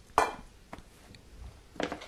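A stainless steel mixing bowl set down on a kitchen worktop with a short clank that rings briefly, then a few light clinks of metal utensils against the pan near the end.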